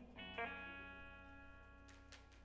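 Electric guitar played quietly: two plucked notes about a quarter second apart that ring on and slowly fade, the opening notes of a song.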